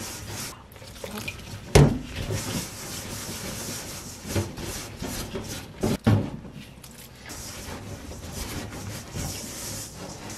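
Gloved hands rubbing and squeezing damp glutinous rice flour against a stainless steel bowl, working water into dry flour for rice-cake dough: a steady scraping, with a few sharp knocks, the loudest about two seconds in and others around four and six seconds.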